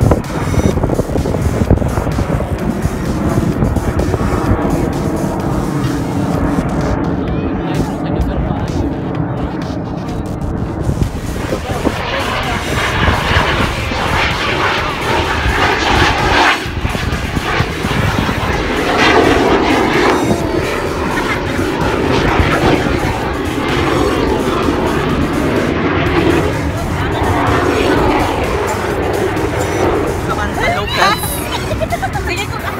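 Jet aircraft of an aerobatic display team flying over in formation, a steady roar that grows louder from about twelve seconds in as a jet passes low, with crowd noise beneath.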